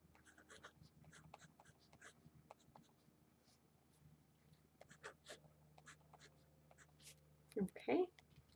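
Marker writing on paper: a run of short, faint strokes with pauses between them. A brief, louder voice sound comes near the end.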